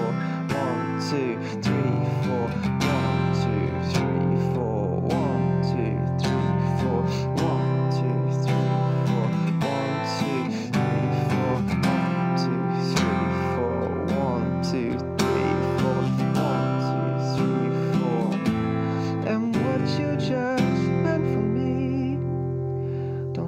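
Steel-string acoustic guitar strummed with steady down-strokes through a chord progression of Fsus, C, Am and G.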